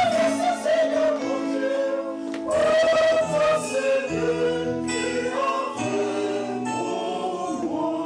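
A choir or congregation singing a hymn with instrumental accompaniment, sung lines moving over long held chords; the entrance hymn of a Mass.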